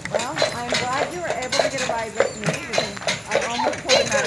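Carriage horse's hooves clip-clopping on the road in a brisk, even walking rhythm of about three strikes a second. The horse is walking fast, not yet calmed down.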